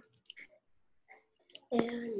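A few faint, scattered clicks over low room sound through a video-call connection. Then a voice starts about a second and a half in.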